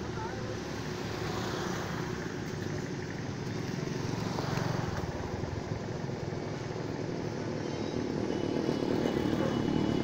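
Steady outdoor traffic noise, with passing vehicles growing louder about halfway through and again near the end.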